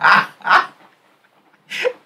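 A man laughing in short bursts, with a pause of about a second before a last burst near the end.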